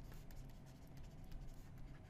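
Faint scratching and light tapping of a stylus writing by hand on a tablet screen.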